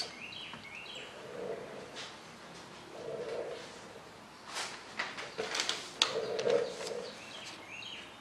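Paper rustling with a few sharp clicks about halfway through as a large paper schematic is handled and spread out on the bench. Behind it, a bird calls softly three times, low in pitch.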